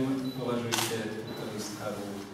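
Indistinct voices talking in the room, with a single camera shutter click about three quarters of a second in.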